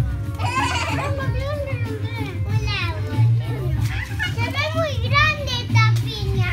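A group of young children chattering and calling out over one another in high voices.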